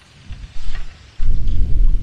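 Wind buffeting the microphone: a low, gusty rumble with no pitch, swelling suddenly about a second in and staying loud, with a few faint clicks before it.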